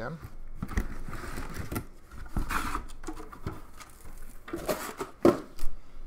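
Cardboard hobby boxes of trading cards being handled and set down on a stack, with scattered light knocks and scrapes, the loudest about five seconds in.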